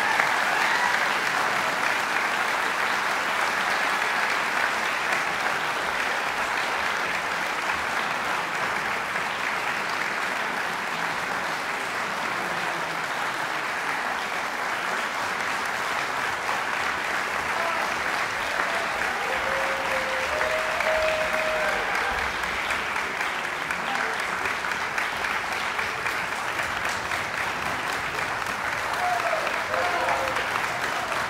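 Audience applauding steadily, with no break.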